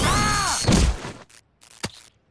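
Cartoon electric-shock sound effect: a zapping whine that rises and then holds high, under a man's cry. A heavy thud follows less than a second in as he drops to the ground, and a single faint click comes near the end.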